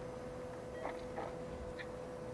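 Quiet operating-room background: a steady faint tone with a few soft ticks scattered through it.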